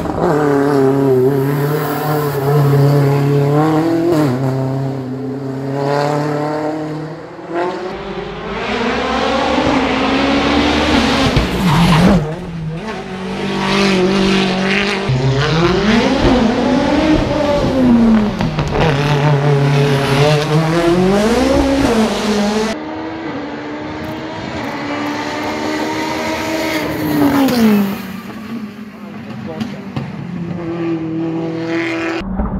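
Mitsubishi Lancer Evo X RS's turbocharged 2.0-litre four-cylinder driven hard in a hill climb, heard in several passes: the engine note climbs through the revs, drops at each gear change and swells and falls as the car brakes and accelerates through corners.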